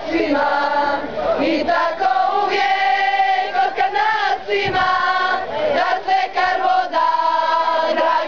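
A group of women's and children's voices singing a song together, with long held notes.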